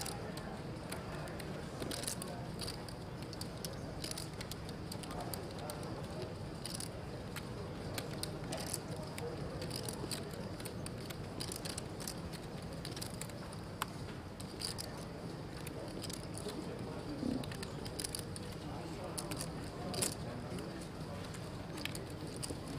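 Poker room background: a low murmur of distant voices with scattered light clicks of poker chips being handled at the tables.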